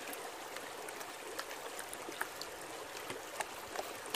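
Shallow river water flowing and washing over the rim of a plastic gold pan held in the current: a steady rush with a few light clicks scattered through it.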